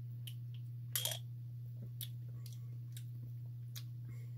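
Drinking from a glass ramune bottle with a marble in its neck: a handful of short clicks and swallowing sounds, the loudest about a second in, over a steady low hum.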